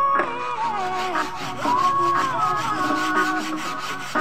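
Wet carpet being scrubbed by hand in quick repeated strokes, with a song playing in the background.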